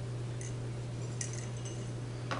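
Steady low hum with two faint light clicks, about half a second and just over a second in.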